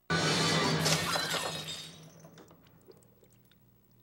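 A ceramic coffee cup and saucer smashing down onto a laptop and table. One sudden crash that fades out over about two seconds, followed by a few small pieces clinking as they settle.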